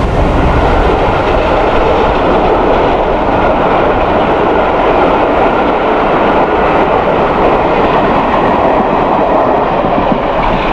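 Steam-hauled train's passenger carriages rolling past on the rails, a loud, steady noise of wheels and running gear.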